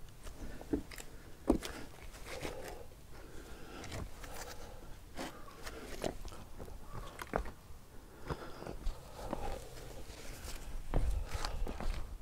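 A lava-rock lightweight concrete panel knocking and scraping against wooden 2x4 supports as it is set down, stood on and lifted off, with shoe scuffs on concrete. The knocks are scattered, with a louder one about a second and a half in and another near the end. The panel makes no cracking sound: it holds under a person's weight.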